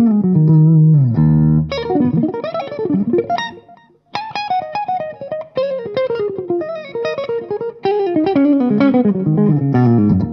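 Ibanez Prestige S-series electric guitar played on the neck pickup through a Laney Ironheart amp's clean sound with a touch of delay: fast runs of single notes, mostly falling in pitch, with a brief break just before four seconds in.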